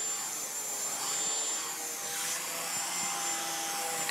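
Shark Apex UpLight DuoClean vacuum running steadily through its hose and pet-tool attachment as the tool is moved over carpet.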